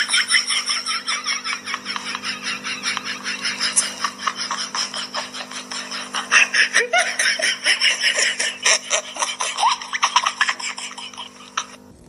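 A person laughing hard and continuously in rapid, high-pitched pulses over a steady low hum, cutting off suddenly near the end.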